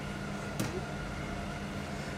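Steady low hum of kitchen machinery, with one brief click about half a second in.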